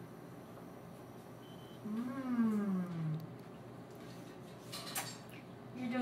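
One drawn-out vocal sound, falling steadily in pitch, about two seconds in, and a short light click just before five seconds, with low room background between them.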